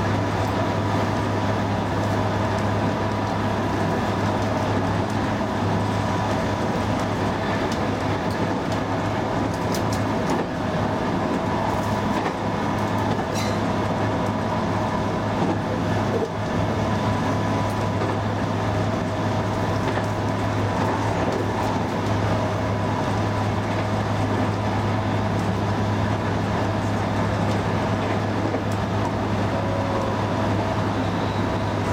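Electric train standing still, its onboard equipment giving a steady low hum with a few faint constant higher tones.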